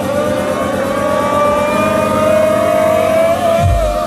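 Loud club music recorded on a phone in a nightclub: a held siren-like synth tone that rises slowly in pitch over a dense background, with heavy bass beats kicking in near the end.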